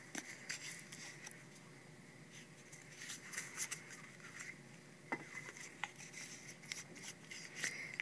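Faint handling sounds of block-printing ink being squeezed from a tube onto the inking tray: scattered small clicks and light scrapes.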